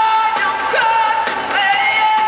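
Live pop-rock band music with a woman singing long held notes.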